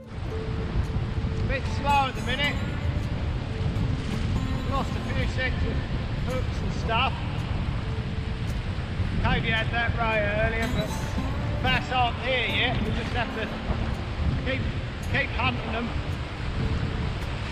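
Wind buffeting the microphone over breaking surf, a steady low rumble, with short high pitched calls coming and going above it.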